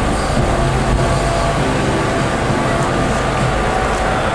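Steady rumble of street traffic, with a motor vehicle's engine running nearby.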